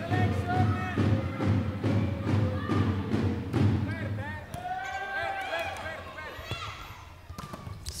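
Indoor volleyball match during a serve and rally: a steady rhythmic beat from the stands for the first half, crowd voices, and the thuds of the volleyball being bounced and struck.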